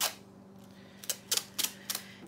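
Blue painter's tape being pulled and torn from its roll: one sharp rip at the start, then four quick rips in a row about a second in.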